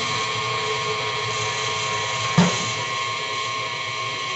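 Electric kitchen mixer running steadily with a high whine while beating Nutella and mascarpone filling, and a single knock about two and a half seconds in.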